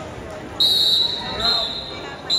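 A shrill whistle blown twice during a wrestling match, the first held for nearly a second, the second shorter and a little lower, over people shouting.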